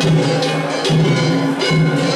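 Festival float ohayashi: taiko drums and clanging kane bells played together in a loud, continuous, rhythmic festival beat.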